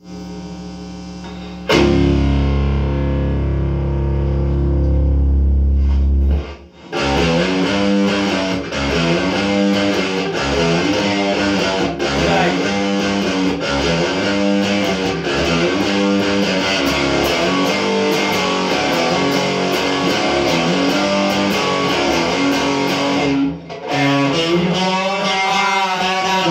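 Electric guitar played through an amplifier. After a couple of seconds of low amp hum, a chord is struck and held for about four seconds, then steady rhythmic riffing follows, breaking off briefly near the end before starting again.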